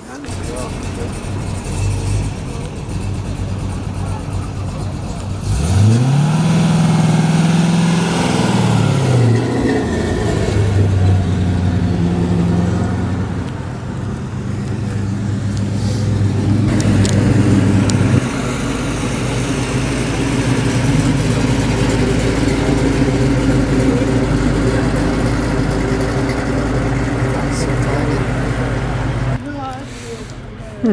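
Hot-rodded classic car engine revving up and back down about six seconds in, then running steadily with a deep rumble as the car moves past at low speed.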